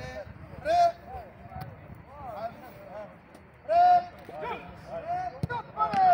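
Several men's voices calling and shouting out across a football pitch during a warm-up, with two louder shouts about a second in and about four seconds in. A single sharp knock is heard near the end.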